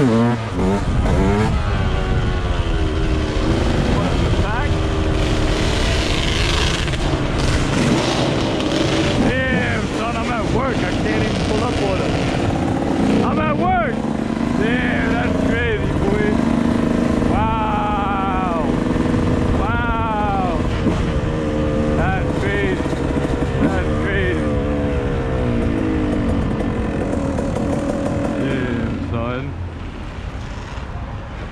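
Dirt bike engine running on the move, its pitch rising and falling through throttle changes, with several short sharp revs, over a low rumble of wind on the microphone. The engine sound drops near the end as the bike slows.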